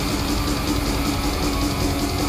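Black metal band playing live: distorted electric guitars and bass over drums, with one note held in the middle of the dense, unbroken wall of sound.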